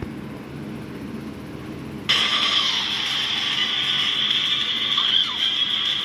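Animated film soundtrack played through a screen's small speaker, cutting in suddenly about two seconds in after faint room noise: a steady, high-pitched mix with a few swooping tones near the end.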